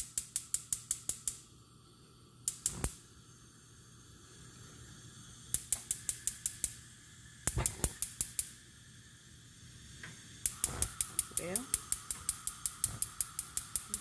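Frigidaire gas cooktop's spark igniters clicking in rapid trains of about five clicks a second. There are several short bursts and then a longer run near the end, as the burners are lit. The owner says one burner is sometimes hard to light.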